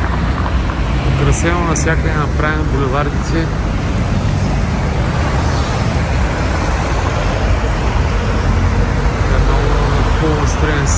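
City road traffic: cars driving past on a multi-lane boulevard, a steady rumble of engines and tyres on the road. Voices are heard briefly a second or two in.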